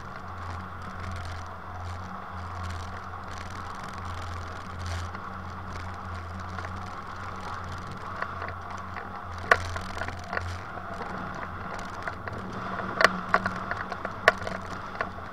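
Steady rush of airflow around a hang glider in flight, with a low steady drone underneath. From about nine and a half seconds in come a few sharp clicks and rattles, the loudest a little before the end.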